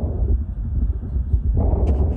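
Wind buffeting the microphone, a steady low rumble that rises and falls.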